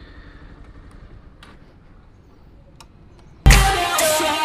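Bajaj Pulsar 220F's single-cylinder engine idling faintly at a standstill, a low steady rumble with a few light ticks. About three and a half seconds in, loud electronic music starts abruptly.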